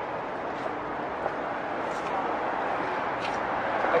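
City street ambience: a steady wash of traffic noise with indistinct voices of passers-by, growing slightly louder toward the end.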